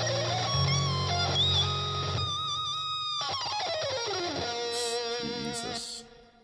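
Electric guitar lead on a pink Hello Kitty Stratocaster-style guitar: quick melodic lines of sustained, bent notes, then a long downward slide about three seconds in, ending on one held note with vibrato that stops just before the end.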